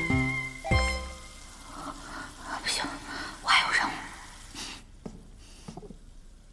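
A music cue ends about a second in. Then a young woman gives stifled, excited giggles behind her hand. Near the end it goes quieter, with a few soft knocks.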